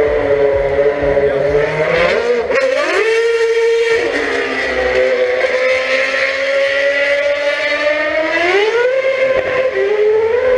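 High-revving racing car engine running hard, its pitch climbing sharply about two and a half seconds in and again near the end.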